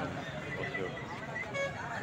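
A rooster crowing, one long pitched call, over background voices.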